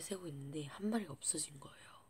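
A girl speaking a few words that the recogniser did not catch, trailing off near the end.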